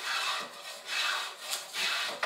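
Hand tool shaving the edge of a curved wooden boat part in repeated strokes, about three in two seconds, each a short hissing rasp.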